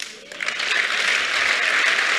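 Congregation applauding: the clapping swells up a moment after a brief lull and holds steady.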